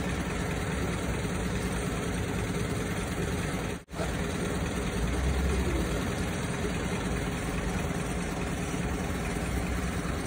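Flatbed recovery truck's engine idling steadily with a low hum. The sound drops out for an instant just under four seconds in.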